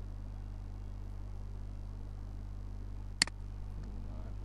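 Steady low electrical hum with a single sharp computer-mouse click a little over three seconds in.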